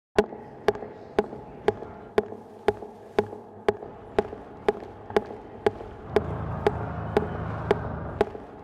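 Footsteps of hard-soled shoes on a concrete tunnel floor, a steady walk of about two sharp steps a second with a ring after each. A low rumble comes in about six seconds in.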